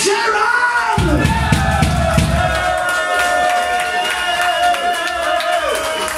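Live band sound in a club: an electric guitar holds one long note for a few seconds among sliding, falling pitches, with a low rumble about a second in, and the crowd shouting.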